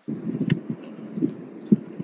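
Muffled low rumble with a few soft, irregular thumps.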